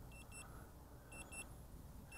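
Drone remote controller sounding its return-to-home alert: a faint, high double beep about once a second while the drone flies back on its own.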